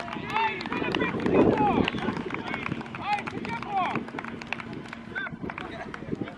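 Football players shouting to one another across an outdoor pitch: many short, distant shouts from several voices, with scattered clicks and a louder rush of noise about a second and a half in.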